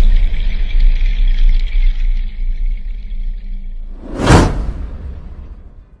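Logo sting sound design: a loud low rumble under a high shimmer that fades away, then a single whoosh that swells and falls about four seconds in before the sound dies down.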